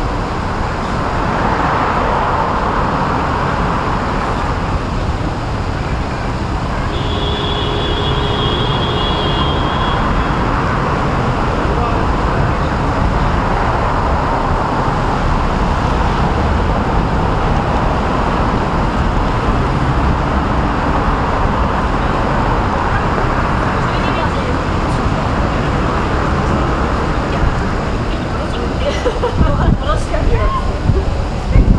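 Steady city traffic noise with a heavy low rumble, swelling now and then as vehicles pass. A brief high-pitched tone comes in about seven seconds in.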